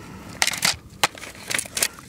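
Short crunching rustles and a sharp click from handling the plastic media baskets and foam sponge of a canister filter as they are fitted together.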